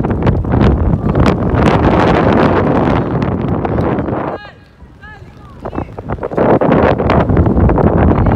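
Wind buffeting the microphone, loud and gusty. It drops away for about a second halfway through, then returns.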